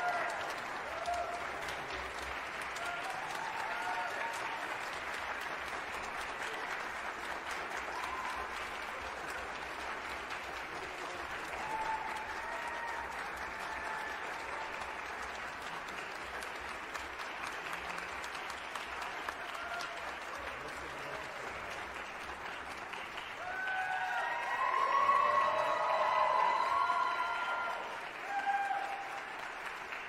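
Concert audience applauding steadily in a hall after a performance, with voices calling out over the clapping. The calls are loudest for a few seconds about three-quarters of the way through.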